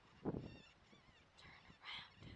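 Faint, high wavering animal calls, rising to a sharp squeal near the end.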